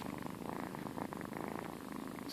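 A domestic cat purring close to the microphone: a faint, steady, finely pulsing rumble.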